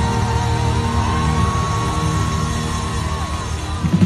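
Live concert music in an arena: a sustained, steady chord with a held high note that rises slightly about a second in and falls away near the end, with crowd noise underneath.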